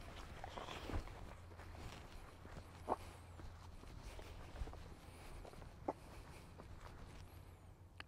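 Faint footsteps of a person and a dog walking together on grass, with a few soft ticks along the way.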